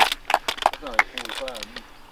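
A small crowd of spectators shouting and clapping as a vote for the winner of a boxing bout. A sharp clap comes right at the start, then scattered claps and voices that die down towards the end.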